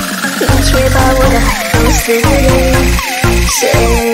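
Chinese electronic dance remix track with heavy, pulsing bass and short falling synth zaps over it, under a slowly rising sweep. The bass drops out near the end, leaving held synth tones.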